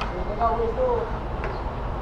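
Brief speech over a steady low rumble of wind and road noise from a moving motorcycle.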